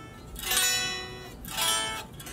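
Tom Anderson Cobra solid-body electric guitar played unplugged: two strummed chords about a second apart, each ringing out and fading. The guitar is loud acoustically for a solid body.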